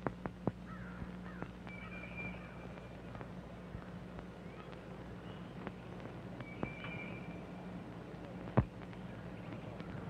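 Faint woodland ambience: a bird calls twice, a few seconds apart, over scattered light clicks, one sharper click near the end, and a steady low hum.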